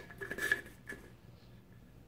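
Faint handling noise: a few light clicks and rubs in the first second as a can seam micrometer is shifted along the seam of a beverage can, then quiet room tone.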